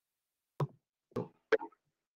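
Three short, sharp knocks, about half a second apart.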